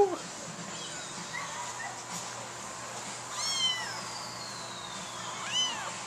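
Small black kitten mewing twice, high thin calls that rise and fall, one about three and a half seconds in and another near the end.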